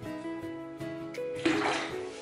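Background guitar music with plucked notes, and about one and a half seconds in a short rush of running water that is the loudest sound and fades by the end.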